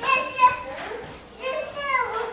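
A young child's high-pitched wordless voice, in two stretches: one at the start and another from about one and a half seconds in that ends on a falling pitch.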